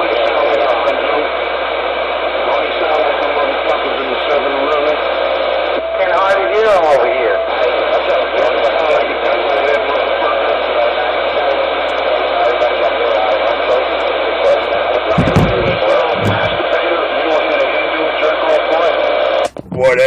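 Ranger CB radio's speaker playing received transmissions: a voice through heavy static, with a warbling whistle about six seconds in and two low thumps around fifteen seconds. The signal drops out briefly near the end.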